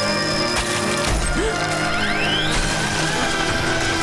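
Dramatic action score with crash and impact sound effects layered over it. There are sharp hits about half a second and a second in, and a rising whine about two seconds in.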